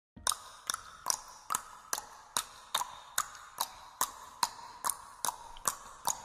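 Steady ticking, like a clock: sharp clicks at an even pace of about two and a half a second, each with a faint short ring.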